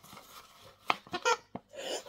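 Handling noise from a plush fabric shark dog toy with a rope ball: a sharp tap just under a second in, then a few short rubs and rustles of fabric.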